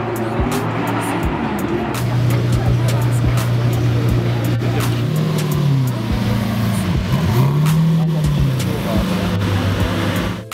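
Lamborghini Murciélago V12 idling with a steady note, then given two light throttle blips about five and seven seconds in, the pitch rising and falling each time. Crowd chatter runs beneath it.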